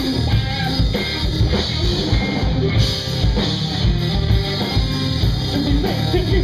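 A live rock band playing: electric guitar, electric bass and drum kit together at a steady driving beat.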